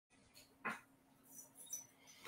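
Near silence: faint room tone with a low steady hum and one brief soft noise about two-thirds of a second in.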